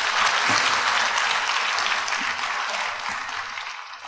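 Audience applause, many hands clapping steadily, fading out near the end.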